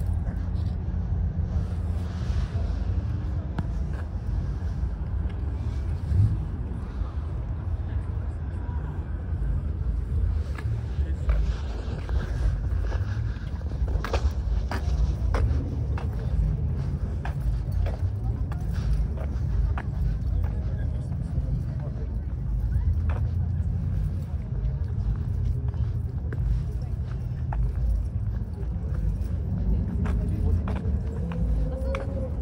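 Outdoor car-meet ambience: a steady low rumble with people talking in the background and occasional short clicks.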